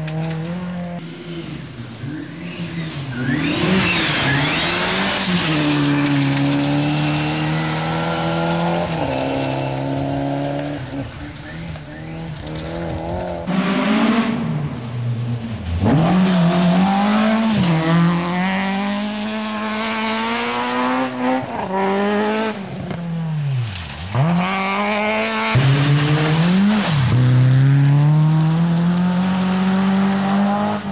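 Rally car engines revving hard on a gravel stage as several cars come through in turn, the engine pitch climbing and dropping back again and again through gear changes. The sound breaks off abruptly twice and starts again with another car.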